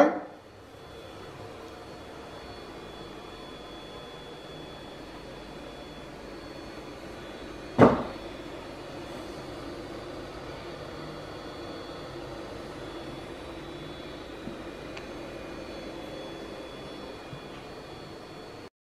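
Steady low hum of an idle Geeetech E180 mini 3D printer's cooling fan, with one sharp click about eight seconds in.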